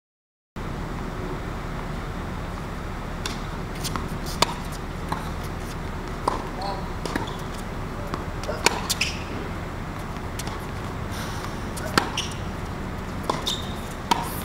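Tennis rally on a hard court: sharp pops of rackets striking the ball and ball bounces, a few seconds apart and loudest from the player nearest, over a steady low hum.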